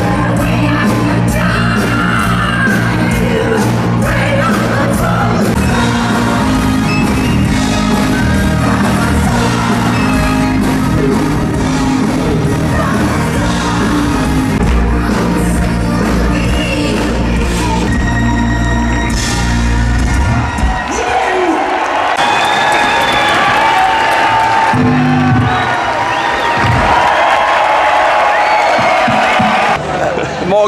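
Live rock band with singer and orchestra playing loudly. About two-thirds of the way through, the heavy bass and drums drop out, leaving higher-pitched music with crowd whoops.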